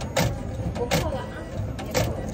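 Indistinct voices of people talking over a steady low rumble, with a few short sharp sounds.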